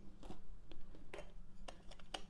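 Faint handling sounds of a camera sling bag's fabric divider being folded down: soft rubbing of the fabric with a few light, scattered ticks.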